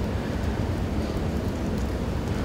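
Room tone in a large hall: a steady low hum or rumble with a faint hiss, and no distinct events.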